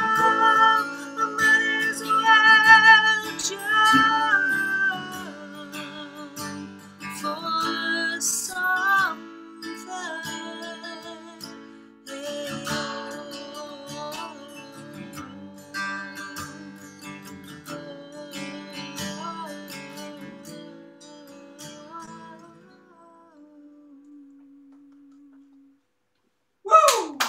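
A woman singing with acoustic guitar accompaniment, her long held notes wavering with vibrato. The song winds down and grows quieter, ending on a single held low guitar note that dies away just before the end.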